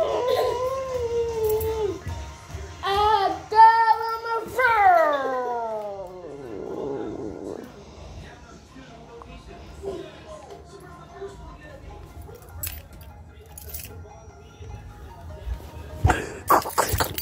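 High-pitched voice-like squeals with wavering pitch, then a long falling wail about five seconds in; after that, a quiet room with a few faint taps.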